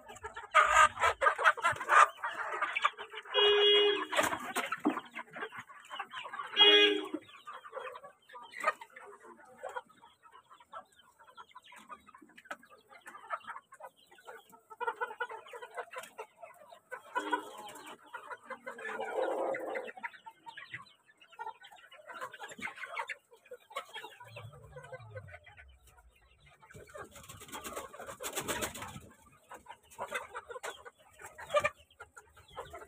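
A flock of hens and roosters clucking and calling, busiest and loudest in the first seven seconds, with quieter calling after that. A short burst of noise comes near the end.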